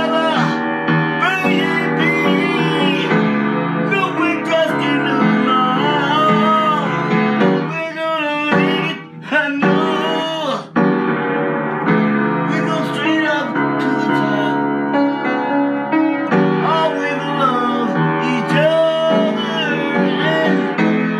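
A man singing while accompanying himself on the piano, with short breaks in the sound near the middle.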